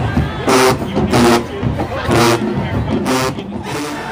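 A group of loud voices shouting in a rhythmic, chant-like way, in repeated bursts with short gaps between them.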